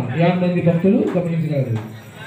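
A man's voice speaking in long, drawn-out phrases, the sing-song delivery of a public announcement.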